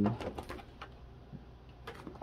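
Plastic binder sleeve pages being handled and turned: a quick run of light crinkles and clicks in the first second, then a few fainter rustles. A voice trails off at the very start.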